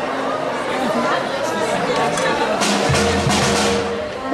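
Crowd chatter, then about three seconds in the school fanfare band strikes up with a held low note and a splash of percussion.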